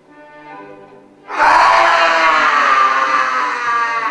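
A woman's long, loud scream breaks in suddenly over a second in, its pitch sinking slightly as it is held, over quiet violin music.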